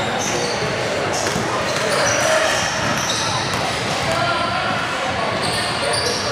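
Voices of players and spectators chattering, echoing in a large gymnasium, with a basketball bouncing on the hardwood court.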